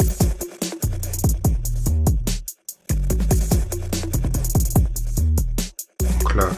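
An electronic hip-hop beat playing: iZotope BreakTweaker drum-machine hits over long 808 sub-bass notes run through a saturating sub-bass plugin. The beat cuts out briefly twice, about two and a half seconds in and just before the end.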